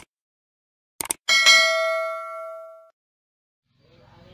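Subscribe-button animation sound effects: a click at the start and a quick double click about a second in, then a bell ding that rings out and fades over about a second and a half.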